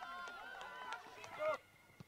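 Faint, distant voices calling out across an open pitch, with one slightly louder call about a second and a half in; the sound then cuts to dead silence at an edit.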